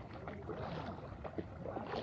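Feet wading through shallow floodwater, with irregular splashes and sloshing at each step.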